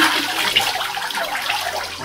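Water sloshing and streaming off a papermaking mould and screen worked in a vat of paper pulp, a steady rushing that eases off near the end.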